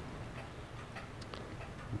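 Faint light ticks, a few irregularly spaced, over a low steady hum.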